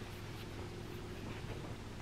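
Faint, steady background hiss and low hum of a quiet room, with a faint steady tone under it and no distinct event standing out.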